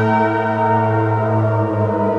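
Analogue synthesizer ensemble playing a horror film score: a sustained, layered chord over a low drone, with the harmony shifting near the end.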